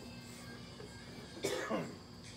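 A person's short vocal burst, cough-like, about one and a half seconds in, falling in pitch as it fades.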